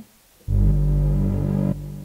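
A deep synthesizer sting: a sudden low, sustained musical chord starts about half a second in, cuts down sharply after a little over a second, and then fades away.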